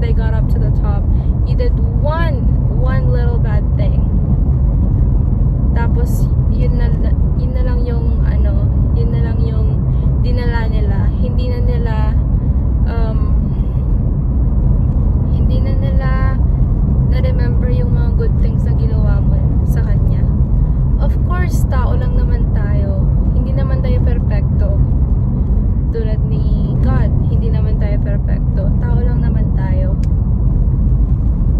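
A woman talking inside a moving car, over the car cabin's steady low rumble of road and engine noise while driving.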